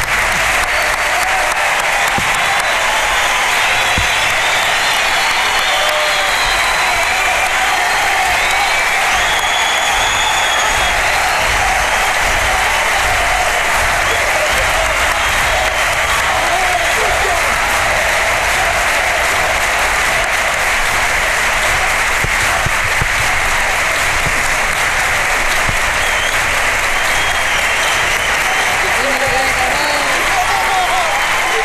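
Theatre audience applauding steadily and at length at a curtain call, with voices calling out over the clapping.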